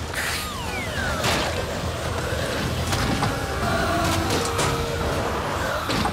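Cartoon sound effects of pies flying in with falling whistles and striking a building in a series of sharp impacts, over a steady low rumble and background music.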